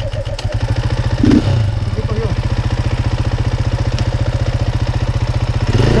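Dirt bike engine idling with a steady, rapid beat, freshly started.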